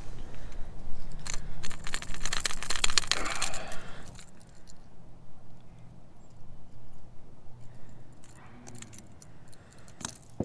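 Metal treble hooks and a crankbait's hardware clinking and rattling as a hook is worked free of a caught flathead catfish. A dense jingling run of about three seconds is followed by occasional light clicks.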